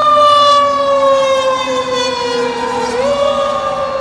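Fire engine siren wailing, its pitch falling slowly for about three seconds, then rising quickly again near the end.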